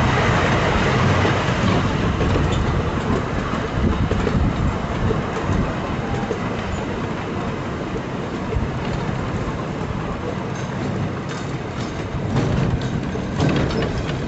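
Small park train running on narrow-gauge track: a steady rumble and rattle of wheels on rail. Clicks over the rail joints grow sharper and louder near the end.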